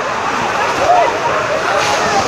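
Fireworks on a torito burning: a steady hiss and crackle of spraying sparks, with many short overlapping shouts from the crowd.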